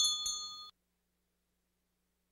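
A bell-like ringing tone dying away, cut off suddenly under a second in, then dead silence.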